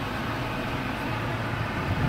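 Steady engine and road noise of a moving car, heard from inside the cabin as a low, even hum.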